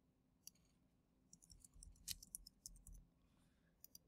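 Near silence with faint computer keyboard and mouse clicks: a single tick about half a second in, then a short scattered run of taps through the middle.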